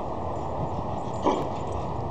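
A dog gives one short bark a little past the middle, over steady background noise.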